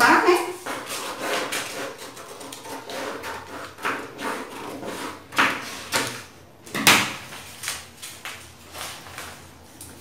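Scissors cutting through a sheet of paper pattern, with the paper rustling and crinkling as it is handled: irregular snips and rustles, the sharpest about seven seconds in.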